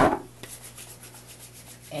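Hands rubbing together in a soft, dry, steady rub, as in hand washing or working in sanitiser, after a sharp click at the very start.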